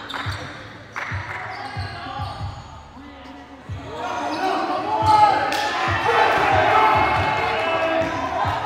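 Basketball bouncing on a gym's hardwood floor during play: a string of short thumps about two a second, with players' voices calling out over them. It grows louder about halfway through.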